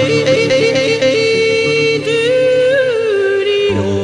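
A woman yodeling: quick flips of pitch in the first second, then longer high notes that bend up and down. Strummed acoustic guitars accompany her.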